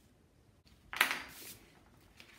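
A metal plier hole punch gives one sharp clack about a second in, fading within half a second.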